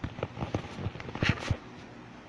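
A quick, irregular run of knocks and taps from a handheld camera being moved and gripped, loudest about a second and a quarter in and stopping at about a second and a half.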